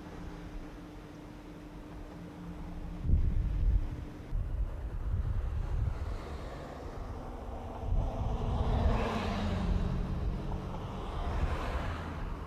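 Wind buffeting the microphone in gusts: low rumbling starts about three seconds in and a stronger hissing gust comes around nine seconds in. A faint steady hum sits under the first few seconds.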